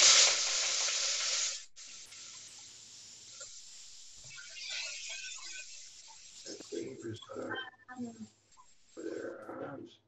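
Pre-soaked rice going into hot browned butter in a pot, sizzling loudly at first. Under two seconds in the sizzle drops sharply and goes on more quietly. A voice speaks near the end.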